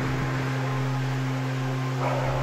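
A steady low hum with a hiss over it, unchanging throughout.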